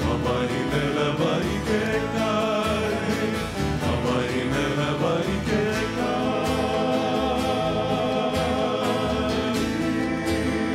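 Hawaiian band playing a song live: several men singing together, accompanied by acoustic guitar, ukuleles and upright bass.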